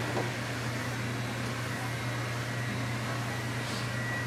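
A steady low hum with an even hiss and a faint high whine, the constant drone of a fan or air-conditioning unit running in a small room.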